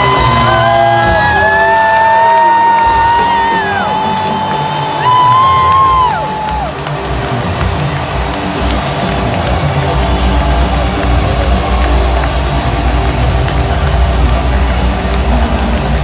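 Loud live rock band playing in an arena, heard from the stands through a phone, with the crowd yelling and cheering. Long held notes that bend in pitch during the first six seconds, then a dense band-and-crowd wash with heavy bass from about ten seconds in.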